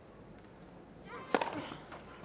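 Hushed crowd on a tennis court, then a single sharp crack of a racket striking the ball on a first serve, about a second and a half in.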